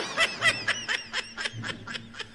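A person laughing in a rapid run of short, high-pitched bursts, about six a second.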